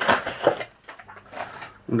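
Cardboard lid of a model-kit box being lifted off, the cardboard scraping and rustling in short bursts: one in the first half-second and another past the middle.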